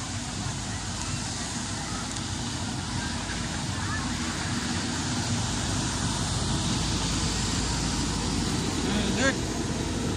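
Steady outdoor street ambience: a low rumble of traffic noise with faint voices of passers-by, and a short rising voice sound near the end.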